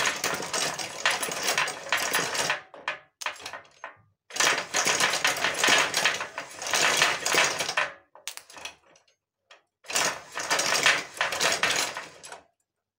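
Dense metallic clattering from a homemade aluminium vehicle chassis' steering linkage and drive as it is worked, in three bursts: about three seconds, then nearly four, then a shorter one near the end.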